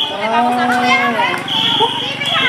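Voices chanting together in a group, with one long drawn-out note through the first half that drops in pitch as it ends. A high, steady shrill tone comes in near the end.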